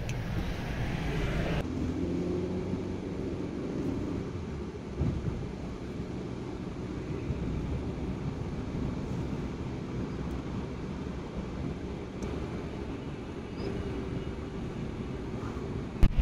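Steady engine and road noise heard from inside a car's cabin while it is driven.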